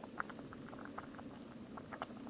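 Food bubbling in a small pot on a backpacking canister gas stove, with many irregular soft pops and ticks over a steady low rush.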